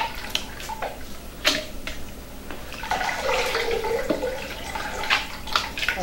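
Hand scooping fresh curd out of a large aluminium pot of whey, with irregular splashes and sloshing, and whey dripping back into the pot: the stage where the curd is separated from the whey for queijo de coalho.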